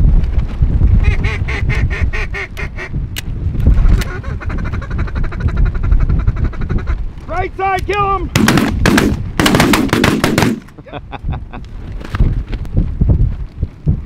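Mallard duck calling in rapid chattering runs, then a short series of falling quacks. About eight seconds in, a quick volley of several shotgun blasts follows, with low wind rumble on the microphone throughout.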